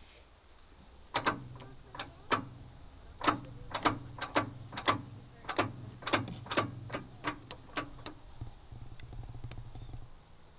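Oil glugging out of a plastic jug as it is poured into a seized engine, a quick irregular run of gulping pops about two a second over a low hum, stopping near the end.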